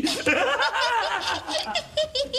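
A character's voice laughing in a quick run of gleeful chuckles.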